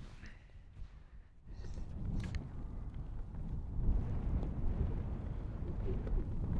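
Wind rumbling on the microphone, getting louder about a second and a half in, with one short sharp click about two seconds in: a golf club striking the ball on a pitch shot.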